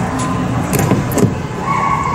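Steady showroom background noise with a few light clicks from the car's rear-door inside handle being pulled and released.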